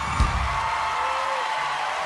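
A low thump as the song's held last chord stops, then a studio audience cheering and applauding, with whoops rising above the clapping.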